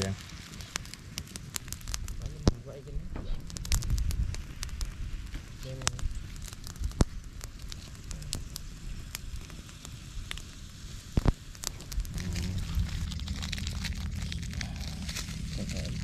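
Small open wood fire crackling, with scattered sharp pops, under mantis shrimp grilling on green-stick skewers. The loudest pops come about seven and eleven seconds in.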